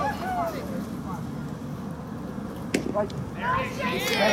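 A single sharp crack at home plate about three-quarters of the way through, from a pitched baseball meeting the bat or the catcher's glove, over faint spectators' voices.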